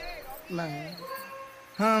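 A short, quiet vocal sound with a bending pitch about half a second in, then a man's singing over music starts loudly near the end.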